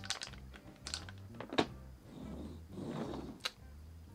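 Small clicks, taps and scuffs of a little wooden toy race car being handled and set down on a cutting mat, with a flurry of light clicks at first and a couple of sharper single clicks later. A low steady hum runs underneath.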